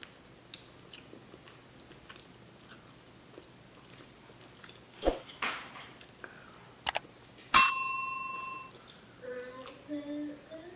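Subscribe-button animation sound effects. A swoosh comes about halfway through, then a mouse click, then a single bright bell ding that rings out for about a second and is the loudest sound.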